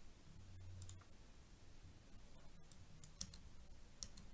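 Near silence with a few faint, sharp clicks of a computer mouse.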